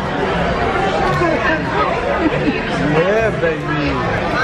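Chatter of many overlapping voices of diners filling a busy restaurant dining room, at a steady level with no single voice standing out.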